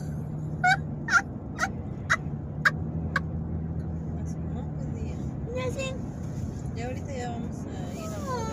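Steady road noise and engine hum inside a moving car, with six short, sharp, pitched sounds about half a second apart in the first three seconds.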